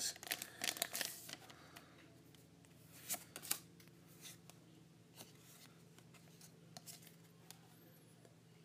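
Foil booster-pack wrapper crinkling as it is pulled open in the first second and a half, then trading cards being handled and slid against one another, with a couple of sharper snaps about three seconds in and a few soft ticks after.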